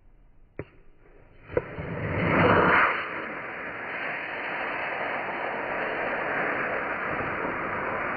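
A model rocket launching: a sharp pop, then the motor's rushing hiss swells to its loudest over about a second and eases off into a steady hiss that carries on to the end.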